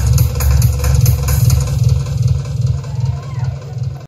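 A roots dub tune played very loud on a sound system: a heavy bassline with ticking high cymbals that drop out before halfway, leaving mostly the bass, which fades lower toward the end.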